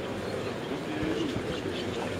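A crowd of many voices chanting japa at once, each murmuring the mantra at their own pace, blending into an overlapping, wavering drone.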